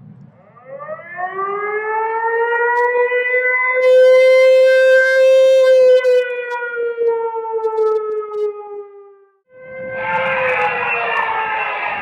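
A siren winds up over about three seconds, holds its pitch, then slowly winds down and cuts off about nine seconds in. Right after, another siren tone begins, and from about ten seconds a dense wash of noise covers it.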